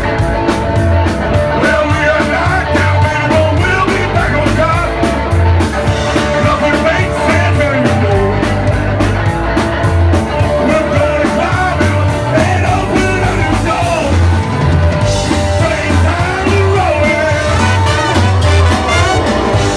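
Rockabilly band playing live: upright bass, hollow-body electric guitar and drums with a steady beat, and a man singing lead into the microphone.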